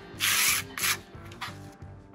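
A small steel scraper blade dragged across a concrete slab, scraping off excess thick cement-based crack-repair coating: two scraping strokes in the first second, the first longer, then only faint background music.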